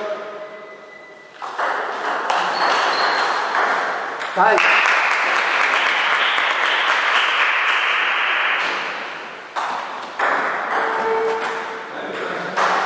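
Table tennis ball clicking sharply off rubber paddles and bouncing on the table, in a string of short separate hits. A voice rises about four seconds in, followed by several seconds of louder mixed noise from voices in the hall.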